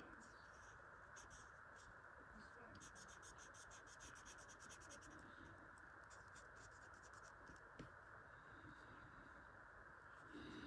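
Faint scratching of a Sharpie marker's felt tip on a paper tile as a small area is inked in solid black, in short strokes with a quick run of them a few seconds in, over a steady hiss.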